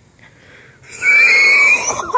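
A person sings one loud, very high-pitched held note. It starts about a second in and lasts about a second.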